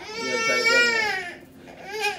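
A young child crying: one drawn-out wail of about a second, then a short one starting near the end.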